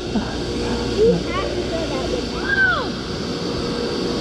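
Steady low rumble of heavy shipyard machinery, a crane working close by, with a constant droning hum.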